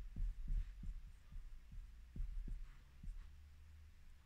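An edding 360 whiteboard marker drawing on a whiteboard: a string of soft, irregular low taps, about three a second, as the pen strokes and lifts, over a faint steady low hum.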